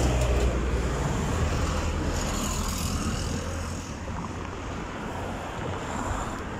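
Low rumble of a motor vehicle on the street, loudest at first and fading about four seconds in, over general street noise.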